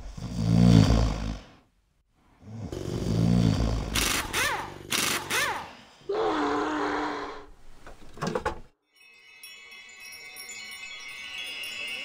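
Horror-film sound effects: two low swells, a pair of rising-and-falling whistling glides, a held low tone and a few clicks, then after a brief silence a shimmer of chime-like tones that slowly builds.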